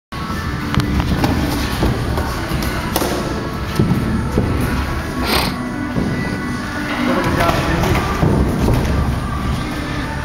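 Boxing sparring in a ring: irregular thuds and sharp knocks of gloved punches and footsteps on the ring canvas, over background music and voices.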